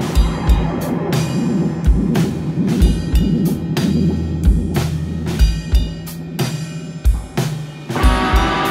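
Live rock band playing an instrumental passage: a drum kit with a kick drum and a sharp snare or cymbal hit about once a second, over steady low notes and electric guitar.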